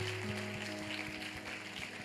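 Soft background music of long held chord notes, with new notes coming in one after another.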